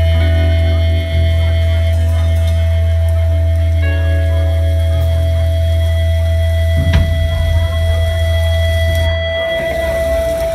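Live rock band holding a long sustained closing chord on bass, guitar and electric keyboard, with one drum or cymbal hit about seven seconds in. The low bass note stops near the end while a keyboard tone rings on.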